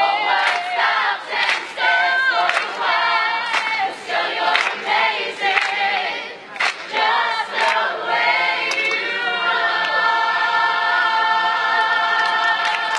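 A large mixed group of men and women singing together as a chorus, loud and full. Near the end the voices settle into long held notes.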